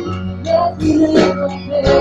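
Live band playing a worship song without vocals: acoustic guitar strummed about every two-thirds of a second over sustained keyboard chords.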